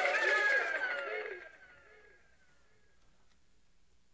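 Overlapping voices fade out over the first second and a half, then near silence.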